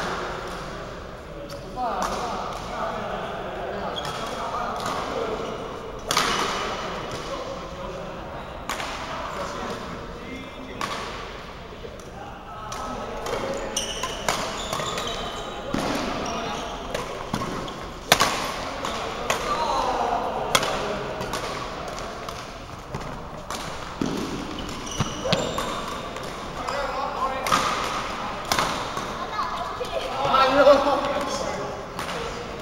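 Badminton rally: rackets striking a shuttlecock again and again, each hit a sharp crack, at irregular intervals.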